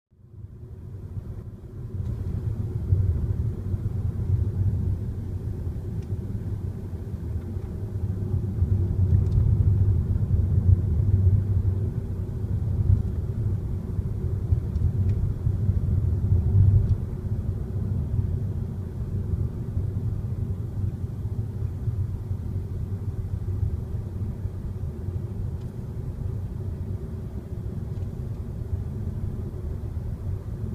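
Low, steady rumble of a car driving, heard from inside the cabin: road and engine noise. It fades in over the first two seconds.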